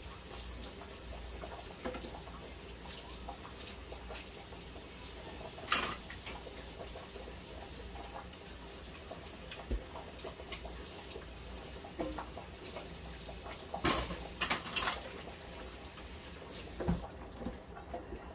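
Dishes and cutlery being washed by hand at a kitchen sink: scattered sharp clinks and knocks of crockery and utensils, several close together about two thirds of the way through, over a low steady background of water.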